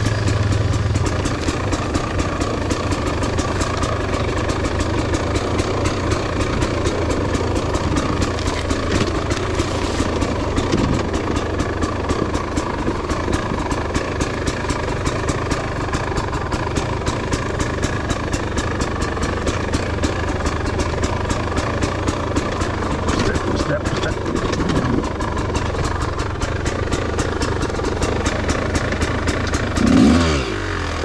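Dirt bike engine running steadily at low revs, its firing pulses close to the microphone, with small changes in revs a few times as the bike rolls down a rocky trail.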